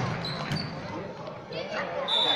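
Basketball bouncing on a hardwood gym floor, with a sharp knock about half a second in, amid voices in a large hall.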